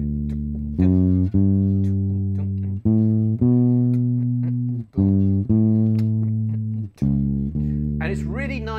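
Fender Precision electric bass playing a slow, unaccompanied bass line in D major. Each chord-root note is held for about a second and a half and is approached by a short note one scale step below it, four times in all.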